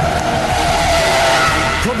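Nissan 350Z's V6 held at high revs while its rear tyres squeal and smoke through a power slide. Too much throttle sends the car wide off the track.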